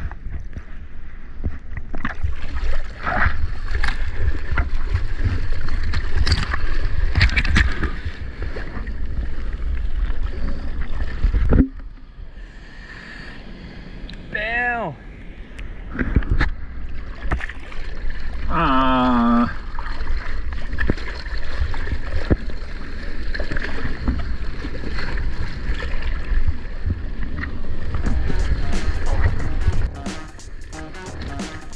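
Sea water sloshing and splashing around an action camera at the surface, with a heavy low rumble of water and wind buffeting the housing. The sound drops and turns muffled about twelve seconds in, then the loud splashing returns near the end as the board runs on a wave.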